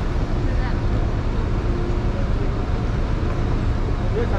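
Steady low rumble of a running vehicle engine, with a constant hum, and faint voices talking in the background.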